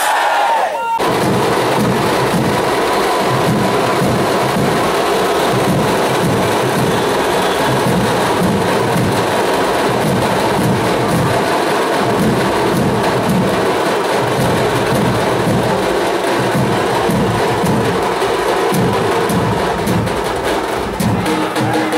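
Dhol-tasha drum ensemble playing loud, dense, steady rhythmic drumming with crowd noise mixed in. It starts abruptly about a second in.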